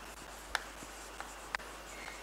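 Chalk writing on a blackboard: a few sharp taps as the chalk strikes the board to form letters, the clearest about half a second in and again near the end, with faint scraping between.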